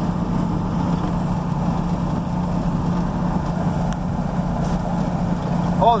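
Steady engine hum and tyre noise of a vehicle driving on a gravel road, heard from inside the cabin.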